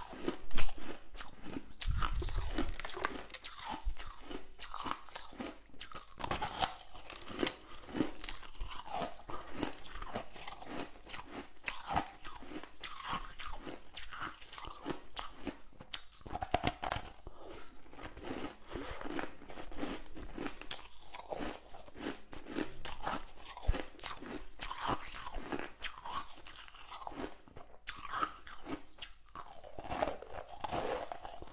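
Frosty chunks of ice being bitten and chewed close to the microphone: a steady run of crunches and crackles, with the loudest bite just under a second in.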